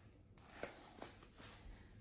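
Near silence with a few faint, soft clicks and rustles from gloved hands at work.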